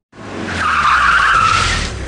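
A car driving up and braking to a stop, its tyres skidding; the skid swells about half a second in and dies away near the end.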